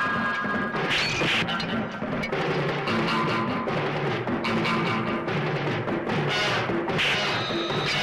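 Film fight-scene background score with a driving rhythmic beat, cut through by repeated sharp hit and crash sound effects from the brawl.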